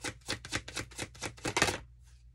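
A tarot deck being shuffled by hand: a quick run of sharp card snaps, about five or six a second, ending in a louder flurry of snaps about a second and a half in.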